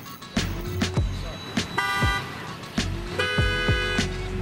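Pop music with a steady drum beat and a sung line, with two car horn honks over it: a short one about two seconds in and a longer one near the end.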